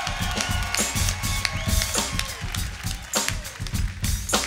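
Live band vamping on a funk groove: drum kit keeping a busy beat under bass and electric guitar, with no singing.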